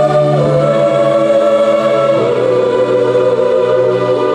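Live pop performance: a female lead singer holds long sung notes into a handheld microphone, stepping down in pitch about halfway through, over the band's sustained backing, with no clear drum beat.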